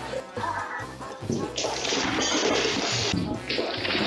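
Background music, with a loud rush of splashing water starting about a second and a half in, breaking briefly and then resuming: a walrus throwing water out of its show pool.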